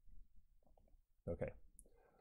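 Quiet room tone with a few faint clicks, and a man saying "okay" a little past halfway.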